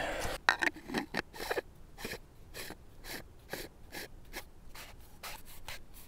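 Pencil writing on a small paper notepad: short, irregular scratchy strokes, a few a second, as a name is signed in a summit register.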